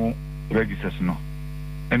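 Steady electrical mains hum on a telephone line, with a short stretch of a man's speech about half a second in and again at the end.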